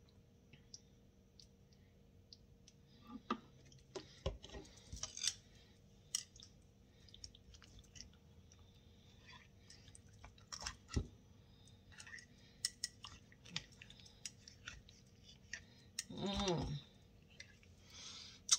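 Chopstick poking down into a glass mason jar packed with dressed tomato, cucumber and onion slices: scattered light clicks and knocks against the glass with soft squishes of wet vegetables. A brief hum from a person near the end.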